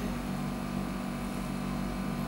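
Steady low hum of room background noise, unchanged throughout, with no other event.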